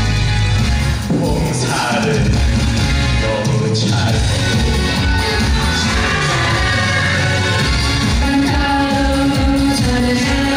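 Korean trot song sung in Korean by young singers on handheld microphones over upbeat backing music, with the singers taking turns on short lines.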